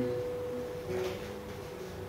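Acoustic guitar played slowly, note by note: one clear note plucked at the start rings on steadily, and a second, lower note is plucked about a second in.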